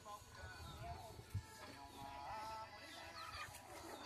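Faint scattered calls of chickens and small birds in a rural backyard, with a single soft knock about a second and a half in.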